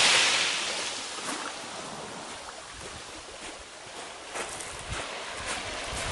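Sea surf washing in over rocks and shingle, loudest at the start and ebbing away over the first second or so into a quieter, steady wash.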